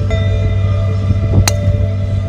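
A golf driver strikes a ball off the tee: one sharp click about one and a half seconds in, over background music with steady held notes.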